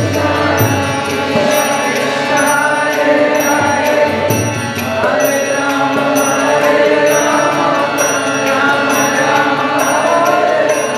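Kirtan: a group chanting a devotional mantra over a harmonium, with small hand cymbals striking on a steady beat about every two-thirds of a second.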